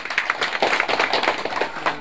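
A small group of people clapping: many irregular, overlapping hand claps.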